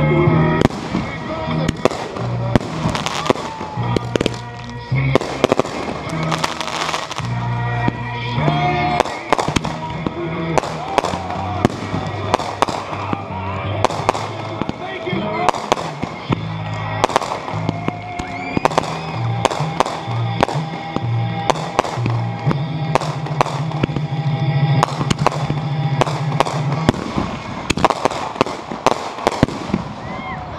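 Aerial fireworks bursting overhead: a long, irregular run of sharp bangs and crackles, some in quick clusters, with music playing underneath.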